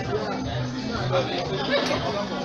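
Several people chattering at once, with music playing underneath that has a repeating low bass line.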